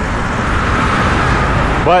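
Steady freeway traffic noise, swelling gently about a second in as a vehicle goes by.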